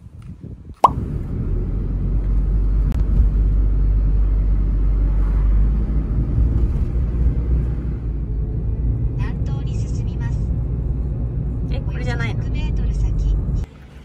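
A sharp click about a second in, then a loud, steady low rumble of a car driving, with brief voices twice in the second half; the rumble stops abruptly near the end.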